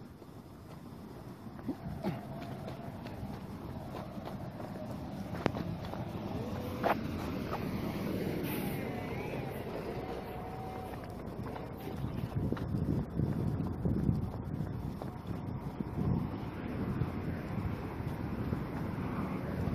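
Wind rumbling on a phone microphone, with a steady hiss of road noise from wet streets. It grows louder, with stronger uneven gusts in the second half.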